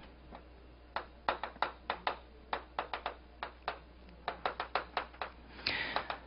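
Chalk writing on a chalkboard: a quick, irregular run of short taps and clicks as each stroke of the characters is made.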